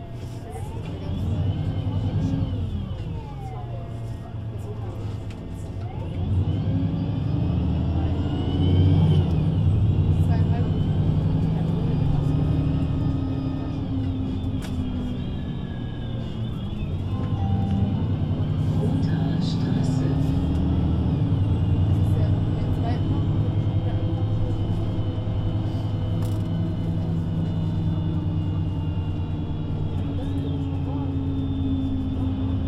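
VDL Citea LLE 120 city bus's diesel engine and Voith automatic gearbox under way. The engine note climbs as the bus accelerates, with a high gearbox whine gliding above it. It eases off briefly about halfway, then holds a steady run.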